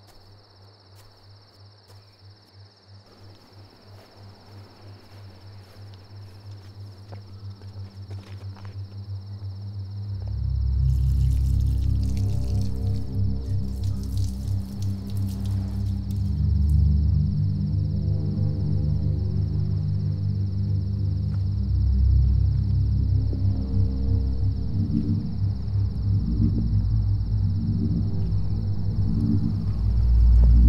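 Film score: a low, pulsing drone that swells steadily over the first ten seconds, then holds loud with layered low tones to the end. A steady high trill like night crickets runs behind it throughout.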